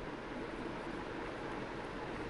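Steady low background hiss of a small room, with no distinct sound standing out.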